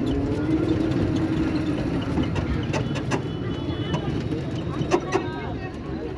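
Outdoor street ambience: a steady low rumble with indistinct voices of people, which grow clearer near the end, and scattered light clicks.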